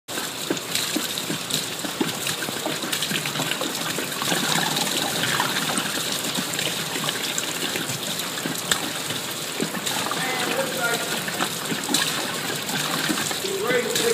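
Bourbon gushing in streams from the bung holes of barrels above and splashing into a metal trough: a steady pouring sound with small splashes throughout.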